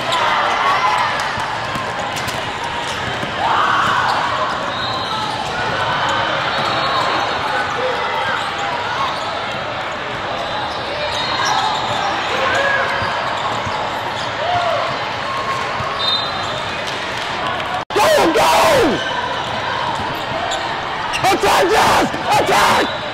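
Basketball game sounds in a large, echoing hall: a ball dribbling and short sneaker squeaks on the hardwood court under a constant din of voices. A momentary dropout in the sound near the end is followed by louder shouting.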